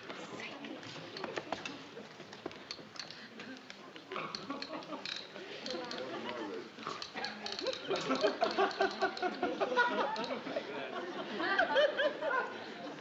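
Indistinct voices, faint at first and growing louder in the second half, with scattered small clicks.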